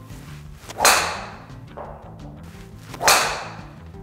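Golf driver striking a ball twice, about two seconds apart, each a sharp loud crack with a short ringing tail and a softer thud about a second later. Background music plays throughout.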